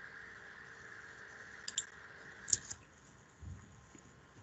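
Faint clicks from someone working at a computer: a pair of sharp clicks a little under two seconds in, and another pair about a second later, over a steady hiss that stops soon after. A soft low thump comes near the end.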